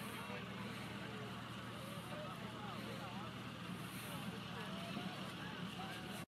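Faint outdoor ambience: distant people talking, with a steady low hum underneath.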